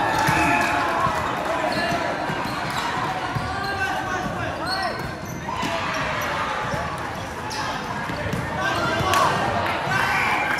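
Volleyball rally on a wooden sports-hall court: the ball struck now and then, sneakers squeaking on the floor a few times, over a constant din of players and spectators calling out, echoing in the large hall.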